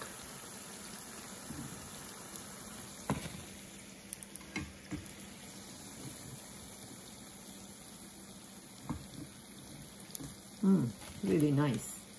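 Onion pakoras deep-frying in hot vegetable oil, a steady sizzle, with a few light taps of a slotted spatula against the pan as fritters are lifted out.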